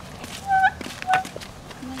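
A leaf held to the lips and blown as a whistle, giving two short, loud, reedy squeaks about half a second apart, the first held a moment with a slight upward bend at its end.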